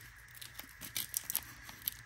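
Faint rustling and a scatter of light ticks from a combat application tourniquet being handled: its nylon strap and hook-and-loop strap rubbing and its plastic windlass knocking against its clip.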